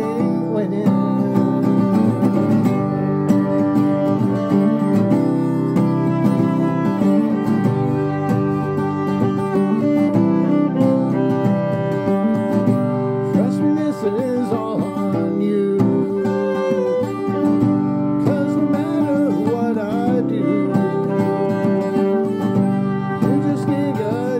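Acoustic guitar played with a man singing and a violin bowed alongside, a live folk-style song running steadily throughout.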